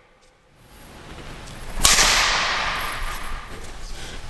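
Badminton racket swung overhead and striking a shuttlecock with a single sharp crack a little under two seconds in, the sound hanging on in a long fading echo of the sports hall.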